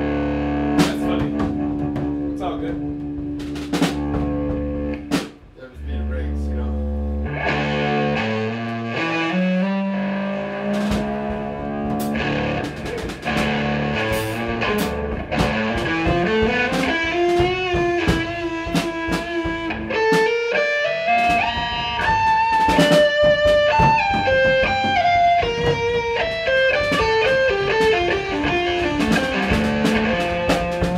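A three-piece band jamming: Gibson electric guitar and Tama drum kit playing an improvised piece. Held low notes ring for the first several seconds, then a lead guitar line moves and bends in pitch over the drums.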